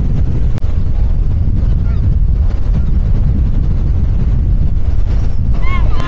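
Strong wind buffeting the microphone outdoors: loud, low wind noise, with a single sharp click about half a second in.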